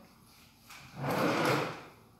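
A kitchen drawer sliding, one smooth rush lasting just under a second, starting about a second in.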